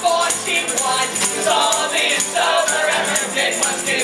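Live acoustic band playing a song: strummed acoustic guitars and a fiddle, with voices singing over them.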